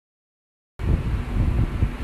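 Silence, then a little under a second in a low, uneven rumbling noise starts: the recording phone or camera being handled and rubbed close to the sink.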